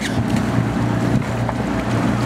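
Outboard motor of a small motorboat running steadily with a low hum, mixed with a rush of wind and water.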